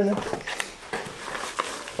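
A few soft clicks and rustles of garlic cloves and their papery skins being handled on a wooden table.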